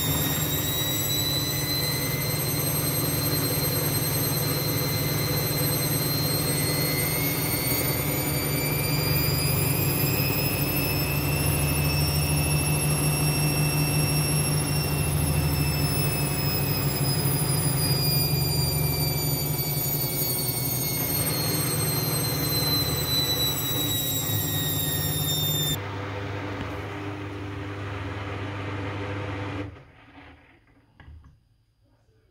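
Kogan front-loading washing machine spinning its drum at high speed at the end of a quick wash. A high motor whine rises in pitch and then falls, over a steady low hum. The whine cuts off suddenly about 26 seconds in, a lower hum runs on as the drum coasts down, and the sound stops near the end.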